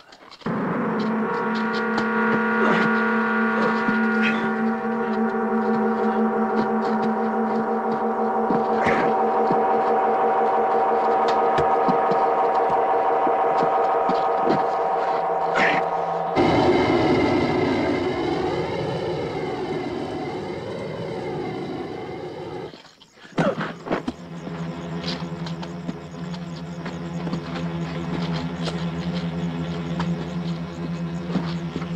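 Film score: a sustained drone of many steady, ringing tones, like a struck gong held on. About halfway through it turns to wavering, bending tones, then it breaks off briefly and a lower steady drone takes over.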